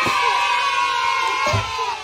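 Young children cheering with a long, high, held shout that fades near the end. A soft thud or two comes as cardboard toy boxes are set down on a table.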